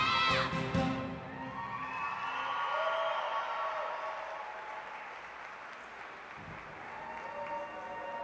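The routine's song ends about half a second in on a last chord. An audience then applauds and cheers, with a few whoops.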